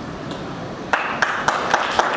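Guests in a banquet hall starting to clap about a second in: separate hand claps over a rising spatter of applause.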